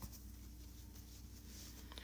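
Faint rustling of fabric pieces being handled and laid down on a cutting table, with a small click at the start and another near the end, over a low steady hum.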